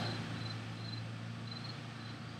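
Quiet background: a steady low hum, with a few faint, short, high-pitched chirps.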